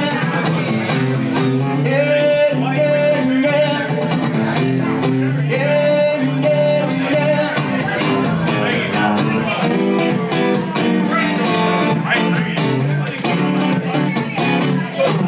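Blueridge acoustic guitar, amplified through a pickup, strummed in a funk rhythm with sharp percussive string hits, while a man sings wordless held notes at the microphone.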